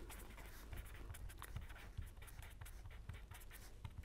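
Pen writing on paper: faint, irregular scratching of the pen strokes.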